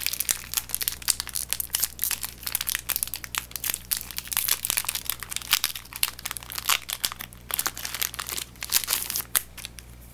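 Foil booster-pack wrapper crinkling in the hands as it is torn open: dense, irregular crackling.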